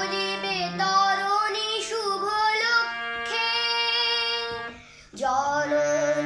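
A boy singing a Bengali patriotic song to his own harmonium accompaniment, the reed chords held steady under his wavering melody. About five seconds in the sound dips briefly, then voice and harmonium come back in.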